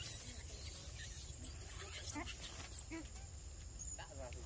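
High-pitched squealing from long-tailed macaques, which stops about two and a half seconds in.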